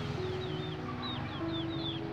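Birds chirping: a quick run of about ten short, high, falling chirps over background music with steady held notes.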